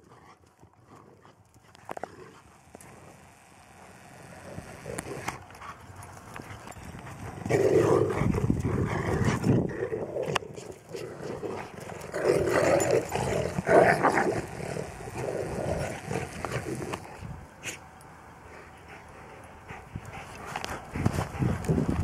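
Dog barking and vocalizing in irregular bursts, quiet for the first few seconds and loudest around eight and thirteen seconds in.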